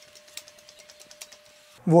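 Faint, scattered light clicks and taps from hands handling the steering parts of a Jeep's front axle, over a faint steady tone.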